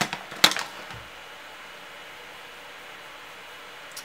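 Two sharp plastic clicks about half a second apart as a compact eyeshadow palette is handled, then quiet room tone.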